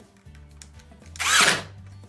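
Cordless drill driving a screw through a plastic Kolbe Korner fitting into the drawer front: one short burst of the motor, about half a second long, a little past halfway.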